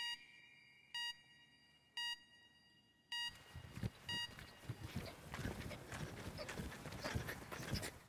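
Countdown timer beeping once a second, five short high beeps, followed from about three seconds in by irregular scuffing and thudding of feet on a dirt track as people jump side to side.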